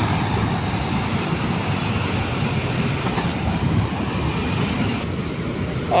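Rumble of a train running away down the track, wheels on rail, a steady noise that slowly fades.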